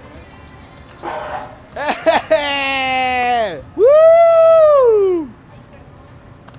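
Two long, drawn-out whining cries: the first slowly sinking in pitch, the second higher and louder, arching up and then falling away.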